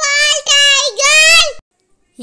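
A high-pitched child's voice chanting the second "T for tiger" line of a phonics alphabet song, stopping about one and a half seconds in.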